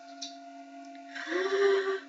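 A woman hums one held note, starting a little over a second in, over a faint steady hum in the room.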